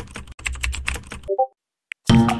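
Keyboard typing sound effect: a fast run of key clicks, briefly broken about a third of a second in, that stops about 1.3 s in. A short electronic blip follows as the typed chat message posts.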